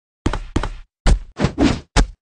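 Added sound effect of about six hard knocks in quick, uneven succession, each a sharp hit with a short decay.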